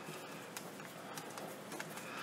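Faint, sparse clicks of a screwdriver and fingers handling the plastic housing of a cheap rotary tool while its screws are being undone.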